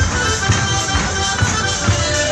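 A live folk band playing traditional dance music, with melody instruments over a steady drum beat.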